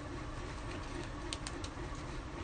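A few soft clicks from a large adhesive chalk transfer sheet being handled and repositioned on a board, over a steady low room hum.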